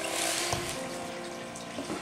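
Soft, breathy laughter, strongest in the first half second, with a light knock about half a second in.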